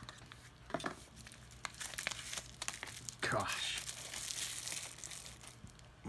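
Small cardboard box being opened and a pink anti-static bubble-wrap bag crinkling as it is pulled out: a few light handling clicks at first, then a couple of seconds of denser rustling about halfway through.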